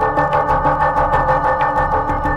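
Live modular synthesizer music: a sustained droning chord of several steady tones over a low bass line that steps between notes, with a fast, even ticking pulse running through it.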